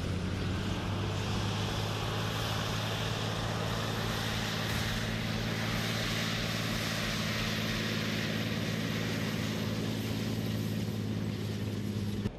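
Israeli Merkava main battle tank driving across dirt: a steady, low engine drone over the broad rushing noise of its tracks and running gear.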